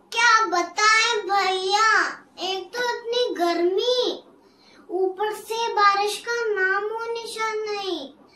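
A young girl's voice singing unaccompanied, in two phrases of long held notes with a short break about halfway.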